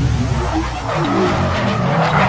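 A sound effect of a car's tyres skidding with its engine running, loud and continuous.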